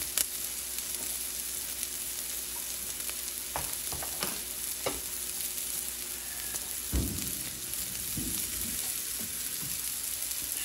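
Sliced onions frying in a nonstick skillet as they caramelize, a steady sizzle with a few light clicks and a dull knock about seven seconds in.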